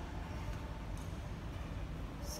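Steady low background rumble with no distinct event, and a faint click about a second in.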